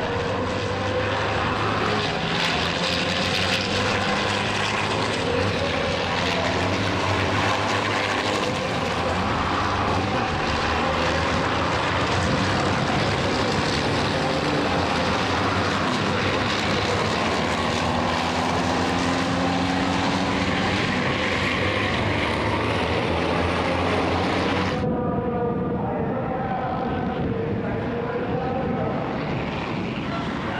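Racing trucks' big turbo-diesel engines running hard around a race circuit, with a steady heavy drone and tyre and wind hiss. The engine note rises and falls as the trucks accelerate and pass. About 25 seconds in, the sound changes abruptly: the high hiss drops away and the engine drone remains.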